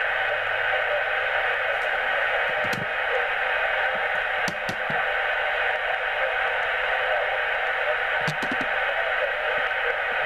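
Yaesu FT-857D HF transceiver receiving on 40 metres LSB, its speaker giving a steady band hiss with a few faint clicks. No switch-mode power-supply interference is indicated on this band.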